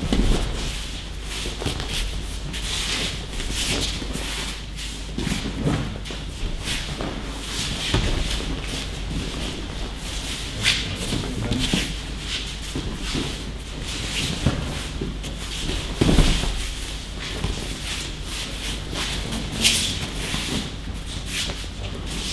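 Bare feet shuffling and sliding on training mats and the rustle of training uniforms, with a few dull thuds of bodies dropping onto the mat, the loudest near the start and about three-quarters of the way through.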